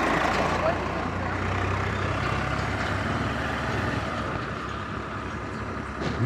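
Swaraj 855 FE tractor's diesel engine running as it drives past close by, a steady low hum with road noise that fades away over the last couple of seconds.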